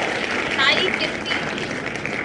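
Recorded crowd cheering and applauding, with whoops over a steady wash of clapping: the name wheel's winner-announcement sound effect.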